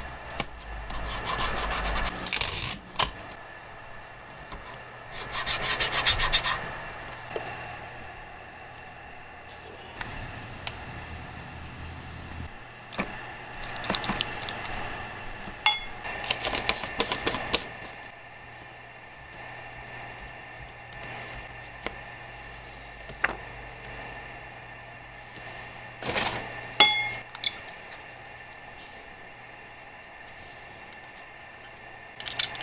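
A foam paint dauber dabbed rapidly against a plastic transparency stencil, with fingers rubbing the stencil down, in about five bursts of a few seconds each of quick scrubbing strokes.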